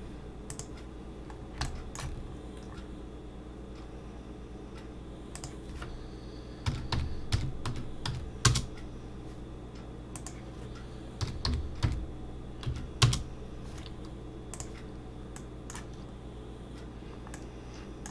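Computer keyboard and mouse clicks, scattered and sharp, coming in quick little clusters around the middle, over a steady low hum.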